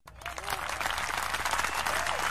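Crowd applause and cheering, a stock sound effect that starts abruptly and swells over the first half-second into dense clapping with a few shouts.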